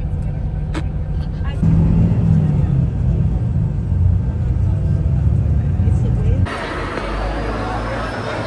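Low, steady engine and road rumble heard from inside a moving coach bus, growing louder about two seconds in. It cuts off abruptly near the end and gives way to the murmur of voices in a large open lobby.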